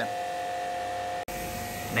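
A steady electrical hum made of a few even tones, broken by a brief dropout about a second in.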